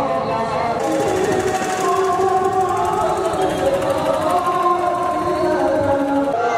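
Men's voices chanting devotional verses in long, held notes that slide between pitches. A fast, even rattle sounds high above the voices from about a second in.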